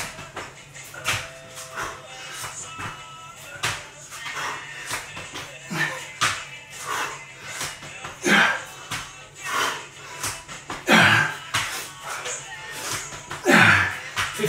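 Repeated slaps and thuds of hands and feet on a tiled floor during fast burpees, mixed with hard, loud exhales from the exertion. Music plays faintly underneath.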